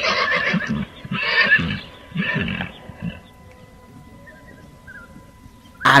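A horse neighing, in a few whinnying bursts over the first three seconds.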